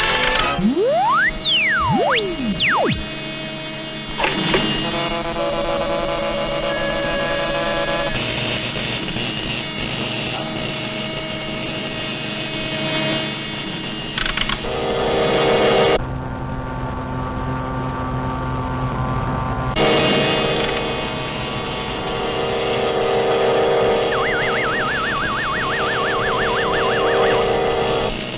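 Orchestral cartoon score from a 1941 soundtrack, with sustained chords that change texture several times. In the first few seconds quick rising and falling pitch glides sweep across it, and near the end a high warbling tone wavers over the music.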